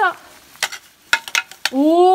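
Ice axe picks and crampons hitting and scraping a frozen waterfall's ice: a handful of sharp knocks through the middle. Near the end a climber's voice gives a long, rising 'oh~' of admiration.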